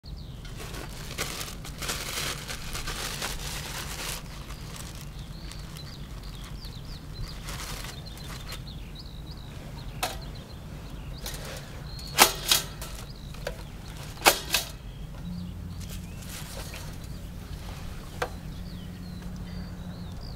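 Sharp, short knocks and clicks, several of them, the loudest coming in two quick pairs midway, over a low steady outdoor rumble.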